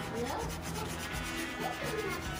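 Chef's knife sawing back and forth through a raw geoduck siphon and scraping on the cutting board in repeated strokes.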